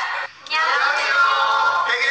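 A group of voices speaking together in a drawn-out, sing-song way, starting after a brief dip in sound near the start.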